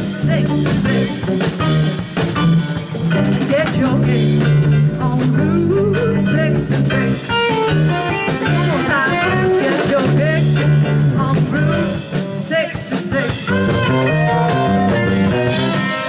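Live band of electric guitar, electric bass, drum kit and keyboard playing an instrumental blues passage, with a steady bass line under drum hits and bending guitar notes.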